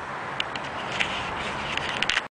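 Handheld camera being picked up and moved: rustling handling noise with a few light clicks over a steady background hiss.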